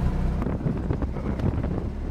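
Cabin noise inside a moving Volkswagen Brasília: the steady low drone of its air-cooled flat-four engine, with road and wind noise.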